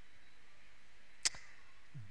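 A pause with only a faint steady hiss, broken by one short sharp click a little after a second in.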